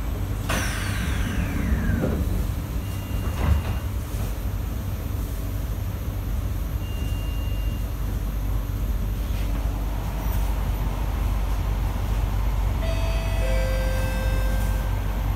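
Train doors closing inside a C151A metro car: a falling whine about half a second in and a thump about three and a half seconds in, over the car's steady low hum. Near the end the traction motors start up with several steady whining tones as the train begins to move off.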